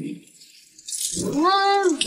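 A woman's drawn-out whining hum, its pitch rising and then falling over about a second near the end, after a brief hiss.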